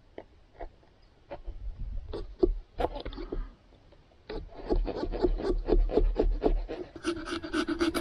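Small pumpkin-carving saw rasping back and forth through raw pumpkin flesh: scattered strokes at first, then a quick run of a few strokes a second from about halfway, over a low rumble.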